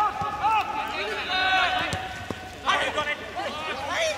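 Players shouting and calling out to each other across a football pitch during play: a string of short, high, arched calls with no clear words.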